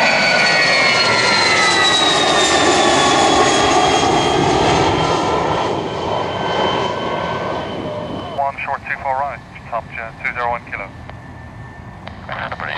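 Business jet climbing out overhead at full take-off power. Its engine whine falls in pitch as it passes and then fades away. Near the end, a scanner plays air traffic control radio speech with a tinny, narrow sound.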